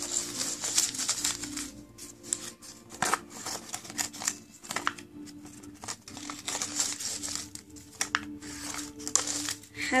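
A folded printer-paper origami flasher crinkling and rustling as hands open it out and work its pleats, in irregular bursts.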